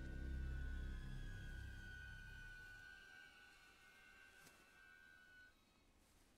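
Quiet film soundtrack played backwards: low held tones fade away over the first three seconds, while thin high held tones carry on and stop about five and a half seconds in. A single soft click sounds near four and a half seconds.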